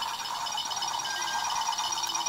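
Electronic sound effect from a red toy rocket ship: a steady electronic hum with a fast, evenly pulsing high beep over it.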